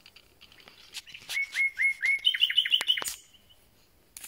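Common nightingale singing one phrase: a few soft ticks, then four repeated rising notes, then a fast trill of higher notes that ends about three seconds in.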